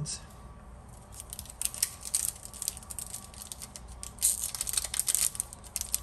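Foil wrapper of a Pokémon trading-card booster pack crinkling as it is picked up and handled, a dense run of small sharp crackles from about a second in.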